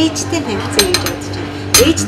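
Metal teaspoon clinking against a porcelain coffee cup and saucer: a few light clinks about a second in and a louder one near the end.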